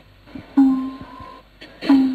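A few sparse notes on a plucked string instrument: one about half a second in and another near the end, each ringing out after it is struck.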